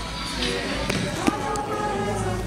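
A group of young voices singing and chattering together, with a few sharp knocks about a second in, as of a hand striking a wooden desk.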